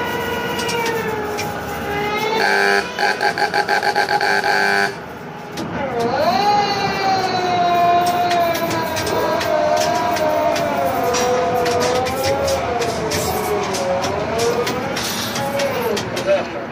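Tower crane at work. A motor whine wavers up and down in pitch as the load is moved. It is broken a few seconds in by about two seconds of rapid pulsing beeps from a warning signal.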